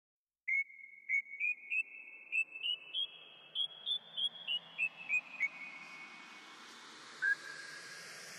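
A whistled tune of about fourteen short, high notes that climb step by step in pitch and then step back down. One lower note comes near the end, over a faint hiss that slowly grows.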